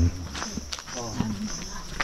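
Voices talking briefly over a steady high-pitched drone.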